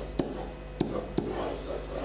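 Whiteboard marker rubbing and scraping across a whiteboard as a box is drawn and letters are written, with a few sharp taps of the tip against the board.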